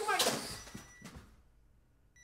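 A man's voice trailing off from a short exclamation, a light knock about a second in, then near silence.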